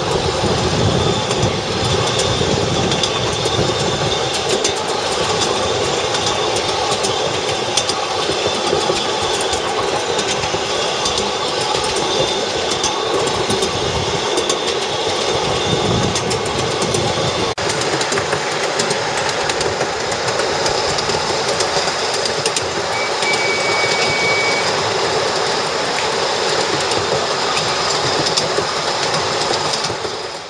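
Ride-on miniature railway locomotive running along small-gauge track, a steady running noise with its wheels clicking over the rail joints.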